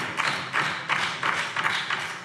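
Sparse hand clapping from a few people in a large hall, uneven claps about three or four a second, dying away near the end.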